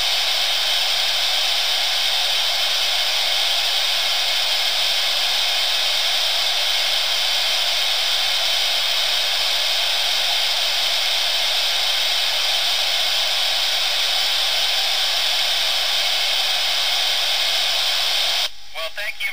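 Steady hiss of an FM ham radio receiver with its squelch open, tuned to the ISS downlink while the station is not transmitting; it comes in suddenly as the astronaut unkeys.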